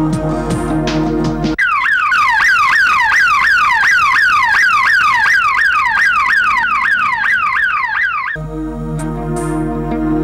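Ambulance's electronic siren sounding in fast repeated falling sweeps, about three a second, for about seven seconds. It cuts in suddenly over background music and cuts off just as suddenly, and the music comes back near the end.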